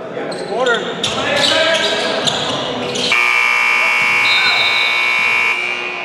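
Basketball bouncing on a gym floor, with players' voices and a short squeak. From about three seconds in, a steady electric buzzer sounds for about two and a half seconds and then cuts off.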